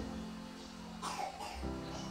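Background music of held keyboard chords, the chord changing near the end, with a short cough-like throat sound about halfway through.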